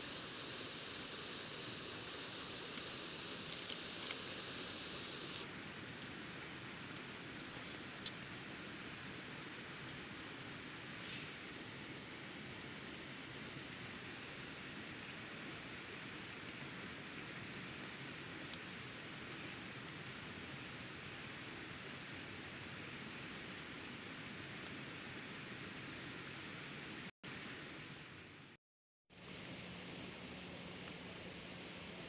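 Steady night chorus of crickets and other insects, a high continuous trill over a low hiss, with a couple of single sharp pops from the campfire. The sound cuts out completely for about a second near the end.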